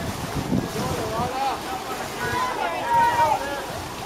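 Wind buffeting the microphone at an outdoor pool, then high-pitched voices shouting and calling from about a second in, rising and falling in pitch.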